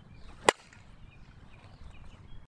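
A single sharp crack of a softball bat hitting a softball during a practice swing, about half a second in, with a brief ring after the hit.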